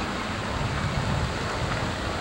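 Wind buffeting the camcorder's microphone: a steady rumbling hiss.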